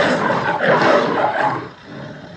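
A caged lion giving a rough growling call that fades out near the end.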